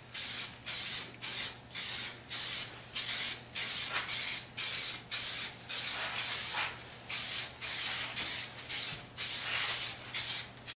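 Aerosol can of plastic-parts cleaner spraying onto a flexible plastic bumper cover in short, quick bursts, about two a second, each a sharp hiss.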